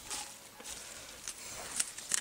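Faint rustling among blackcurrant canes and dry leaves, with a couple of light clicks in the second half, from handling the bush while pruning.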